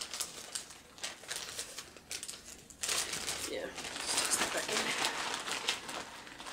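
Crinkling and rustling of a cross-stitch project bag and the linen and kit packed in it as they are handled: a few scattered rustles at first, turning into busier, continuous crinkling about halfway through.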